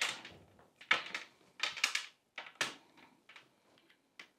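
Handling noises at a desk as cables and recording gear are moved and plugged in: a quick series of sharp clicks and knocks with rustling, busiest in the first three seconds and fainter near the end.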